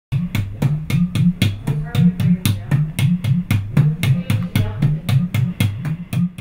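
Music with a steady drum beat, about four hits a second, over a bass line that steps up and down in a repeating figure.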